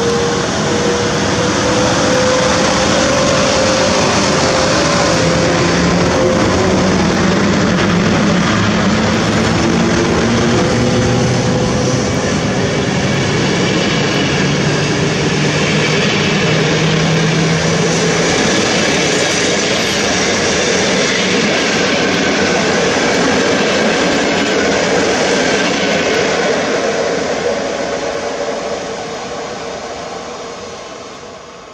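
An Intercity train behind a PKP EP09 electric locomotive rolls past close by: a loud, steady rush of wheels and coaches, with a whine that shifts in pitch over the first half. It fades near the end as the last coaches pass and the train moves away.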